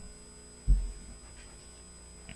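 A single dull, low thump about two-thirds of a second in, over a steady low hum.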